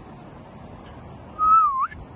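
A person whistles one short, loud note of about half a second, close to the microphone. The note holds, dips, then slides upward, over a steady background hiss.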